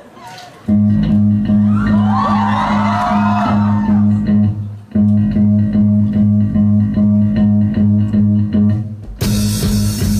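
Live rock band opening a song: electric guitar and bass guitar come in together with a loud, repeated low riff, pausing briefly about halfway through. Near the end the drums enter with cymbals.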